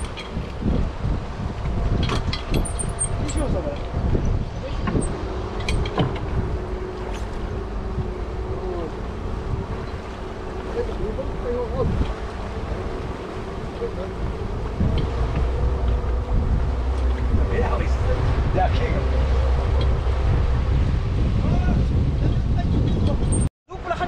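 Speedboat engine running steadily under wind buffeting the microphone, with a few sharp knocks and brief bits of voices; the low rumble grows louder partway through.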